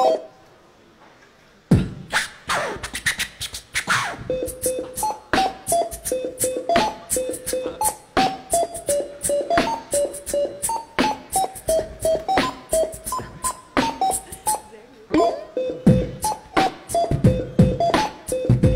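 Supermarket checkout barcode scanners beeping at different pitches to play a tune, over a fast beatbox-style percussive beat. It starts suddenly about two seconds in and runs on as a steady rhythm.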